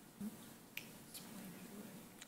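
Quiet room tone with a short, low sound about a quarter second in and a couple of faint clicks around the middle.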